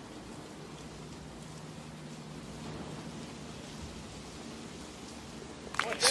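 Quiet outdoor ambience on a golf course green: a steady, even hiss with a faint low hum and no distinct events.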